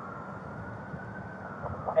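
Steady low hum and hiss with a faint, slightly wavering high tone running through it; a faint voice begins near the end.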